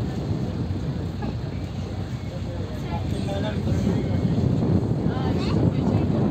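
Small tour boat's engine running steadily under way, with wind rushing on the microphone.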